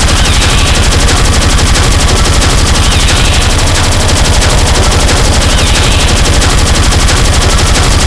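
Speedcore electronic music: a continuous stream of extremely fast, distorted kick drums, loud and unbroken, with a brighter synth figure returning about every three seconds.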